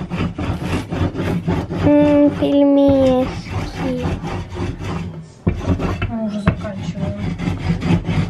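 A rolling pin worked back and forth over dough on a metal honeycomb pelmeni mould, making a rough, repeated rubbing and scraping noise as the dough is pressed into the cells.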